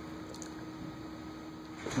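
Room tone: a steady, faint electrical hum with a light hiss.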